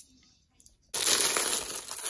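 Candy wrappers rustling as a hand digs through wrapped candy in a plastic pumpkin bucket: a loud, dense rustle that starts about a second in and keeps going.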